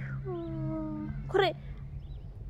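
A woman's voice: one drawn-out, slightly falling wordless vocal sound lasting about a second, then a short syllable about a second and a half in, over a steady low hum.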